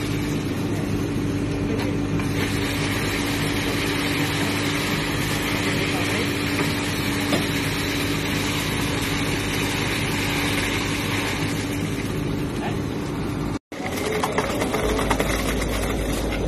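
Steady running of heavy construction machinery's diesel engine, with a constant hum, and workers' voices over it. The sound cuts out for a moment near the end.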